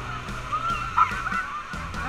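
Rafters giving short, high yelps and whoops over the rush of white-water rapids, the loudest call about a second in.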